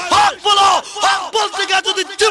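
A man's loud, shouted sermon delivery through a microphone and PA, his voice rising and falling in sing-song arcs.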